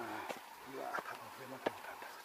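Footsteps climbing stone steps, a sharp tap or scuff about every two-thirds of a second, with a man's low voice talking quietly underneath.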